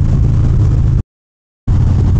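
Harley-Davidson Dyna Street Bob's Twin Cam 103 V-twin and wind noise at freeway speed: a loud, steady low rumble. About a second in it cuts out to total silence for about half a second, then comes back unchanged, a gap in the recording.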